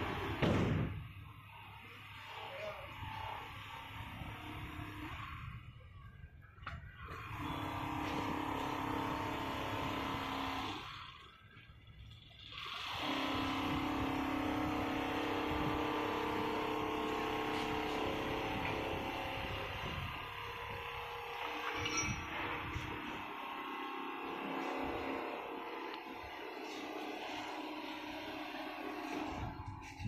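Richpeace single-needle quilting machine running as it stitches a quilt panel: a steady mechanical hum with sustained tones from its drives and needle head. The sound drops away briefly twice, about six seconds in and again about eleven to thirteen seconds in.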